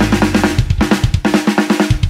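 Rock drum kit playing a busy break of quick strokes, about eight a second, on snare and drums with bass drum and cymbals. The sustained guitar chords drop out while it plays.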